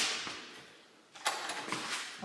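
Short clicks and clunks from a sliding glass door's handle and latch being worked, a little over a second in; the door does not open easily.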